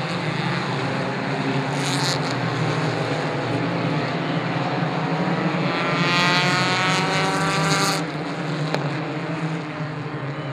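Four-cylinder race cars running laps together, their engines droning steadily. About six seconds in, one engine's note climbs in pitch as it accelerates hard, then ends suddenly about two seconds later.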